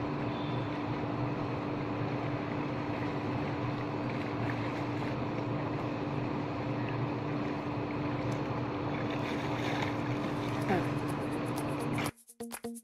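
Pool water sloshing and splashing as a swimmer moves through it, over a steady hiss with a constant low hum.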